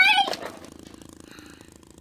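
A girl's high-pitched, dismayed cry in a play voice, ending about half a second in; after it only a faint, steady low hum.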